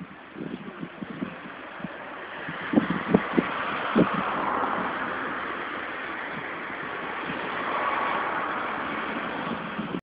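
Motor traffic noise swelling over the first few seconds and then holding steady, with a few short knocks about three to four seconds in.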